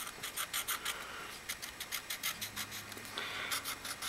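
A permanent marker scribbled in quick short strokes over the metal seating edge of an engine valve, a rapid scratchy rubbing of several strokes a second. This is the marker trick: the ink coats the valve's contact area so that lapping will show where it seats.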